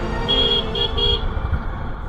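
A motorcycle horn beeps three short times in quick succession, over the low rumble of the moving motorcycle.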